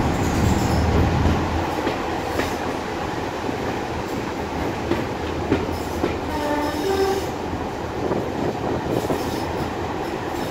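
Heritage railway coach running along the line, with a continuous rumble of wheels on rails and a few sharp rail-joint clicks. A low hum is heard in the first second and a half. About six to seven seconds in there is a brief squeal of wheels on the track.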